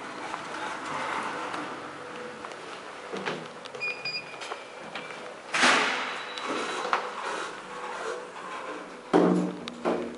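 Sliding doors of a ThyssenKrupp elevator working, with a short high beep about four seconds in and two loud knocks, one near six seconds and one just after nine seconds.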